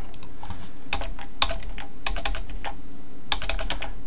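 Computer keyboard keys clicking in two short clusters, about a second in and again near the end, as a block of code is copied and pasted several times, over a steady low hum.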